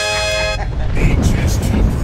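Sampled film sound effects of a vehicle: a steady horn-like tone cuts off about half a second in, then a deep low rumble carries on.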